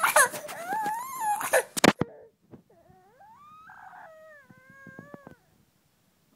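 Baby crying in a temper tantrum: a loud, high-pitched wail for about two seconds that cuts off sharply, then a quieter, drawn-out whine that rises and holds before trailing off.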